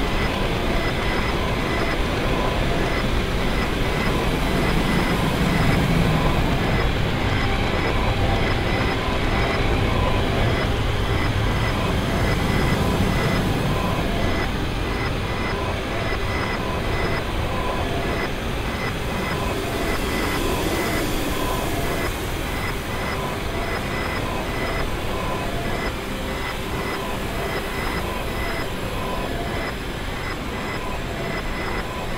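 Harsh noise music: a dense, steady wall of static and rumble with faint high tones pulsing at an even rhythm, easing slightly in loudness toward the end.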